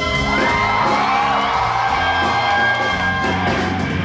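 Live instrumental fusion band playing: electric bass line with drums and electric guitar, with notes gliding upward near the start.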